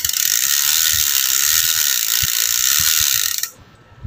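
Bicycle rear freehub ratchet clicking rapidly and evenly as the cassette spins, with the oiled chain running through a wiping rag; the clicking stops abruptly about three and a half seconds in, when the cassette comes to rest.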